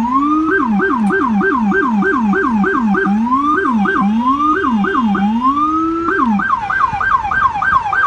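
Police siren on an unmarked NYPD car, switching between a fast yelp of about four sweeps a second and a slower rising wail. It drops away briefly about six and a half seconds in, then starts again with a rising wail at the end.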